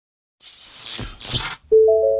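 Intro sound effect: two quick whooshes, then a chime of clear steady electronic notes sounding one after another and slowly fading, the loudest part coming in near the end.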